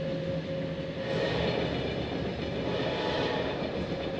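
Running noise of a Watania sleeper train heard from inside a carriage: a steady rumble and hiss of the moving train, with the hiss swelling slightly about a second in.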